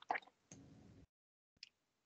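Near silence on a call line, broken by a couple of brief soft noises at the start, a faint rustle about half a second in, and a single small click about one and a half seconds in.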